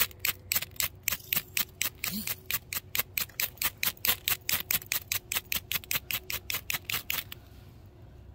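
Fire-starter rod (ferro rod) scraped rapidly with a striker, about five or six strokes a second, throwing sparks onto a tinder bundle. The strokes stop about seven seconds in.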